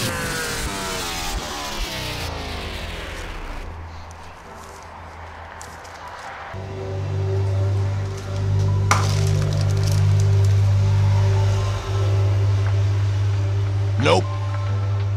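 A power-down sound effect, a stack of tones sliding steadily down in pitch and fading out over the first few seconds. From about halfway it gives way to background music with a steady, held low bass.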